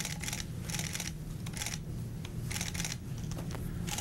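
Press camera shutters clicking in quick, irregular bursts, about eight in four seconds, over a steady low hum.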